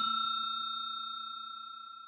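A bell-like 'ding' sound effect for a subscribe-button animation: one struck chime ringing out on a steady high tone and fading away evenly.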